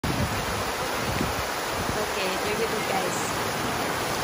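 Many vertical water jets of a plaza fountain splashing back into a shallow pool: a steady rush of falling water.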